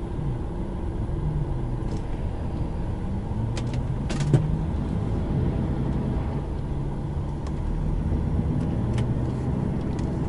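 Heavy truck's diesel engine running as the truck pulls away and rolls forward slowly, heard from inside the cab, its note shifting up and down. A sharp click a little over four seconds in.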